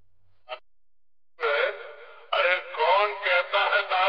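A short electronic blip, then from about a second and a half a thin, filtered voice sample with drawn-out pitch glides, the kind of processed dialogue or vocal line used to open a dek bass DJ mix. No bass is beneath it.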